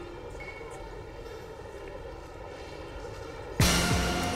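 TV drama soundtrack: a steady ambient wash with no clear melody, broken near the end by a sudden loud hit that opens into music.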